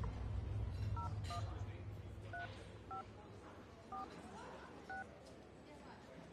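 Smartphone keypad dialing tones: about six short two-tone beeps at uneven intervals as a phone number is tapped in.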